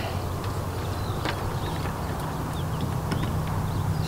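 Open-air background: a steady low hum that deepens with a second low tone about halfway through, with a light click about a second in and a few faint short chirps, likely birds.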